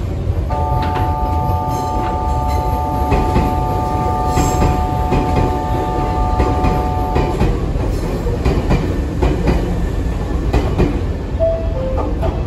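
Nankai limited-express electric train rolling slowly over curved pointwork, wheels clacking over rail joints. A steady chord of high tones sounds from about half a second in and stops about seven seconds in.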